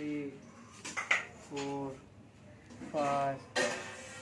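Clay bricks clicking and knocking against brick as they are lifted in wrist curls: a couple of sharp clicks about a second in and a louder knock near the end.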